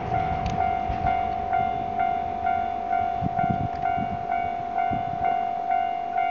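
Railway level-crossing warning bell ringing steadily at about two strikes a second, left behind as the steam train passes, with a low rumble and a few soft thumps underneath.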